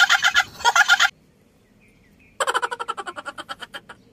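A man laughing in a high, rapid, pulsing cackle, in two bursts: one in the first second, and another from about two and a half seconds in that fades away.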